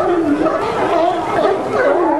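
A herd of California sea lions barking all at once: a dense, unbroken chorus of overlapping calls.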